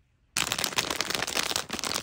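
A plastic sweets bag crinkling and rustling as it is handled, a dense crackle that starts suddenly about a third of a second in.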